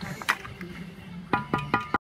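Steel brick trowel clinking against mortar and concrete block: sharp metallic rings, one early and then a quick run of four evenly spaced clinks, with mortar scraped between them.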